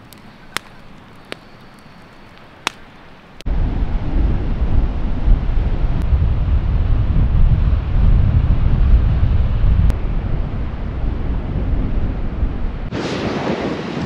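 Strong wind buffeting the microphone: a heavy, rough, low rumble that starts suddenly about three and a half seconds in. Near the end it turns to a brighter rushing hiss. Before it there are a few quiet seconds with three or four sharp clicks.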